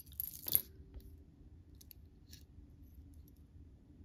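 Jewelry clinking as a strand of small hard beads is handled over a pile of metal disc pieces: a short jingle of clinks in the first half second, then a few faint clicks about two seconds in.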